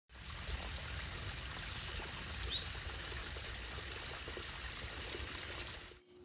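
Running water rushing steadily, with one short high chirp about halfway through. The sound fades out just before the end.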